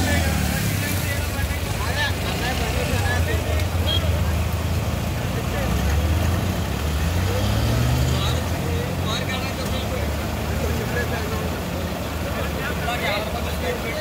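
Floodwater rushing across a road in a steady loud wash, with an engine running nearby whose pitch rises about seven to eight seconds in, and people's voices.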